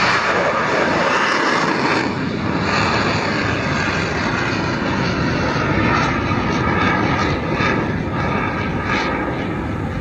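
Tomahawk cruise missile launching from a warship, its solid-fuel booster making a loud, steady rushing noise.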